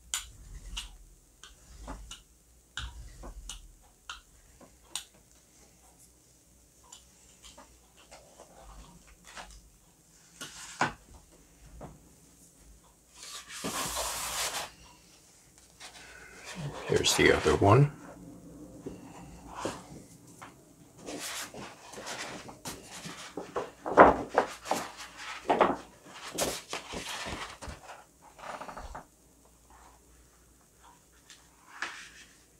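Hands-on gel printing sounds: light clicks of a brayer working paint on the gel plate, then a hissing rustle about halfway through as a thin sheet of Fabriano Rosaspina printmaking paper is pulled off the plate, followed by crinkling and knocks as the paper is handled and a fresh sheet laid down.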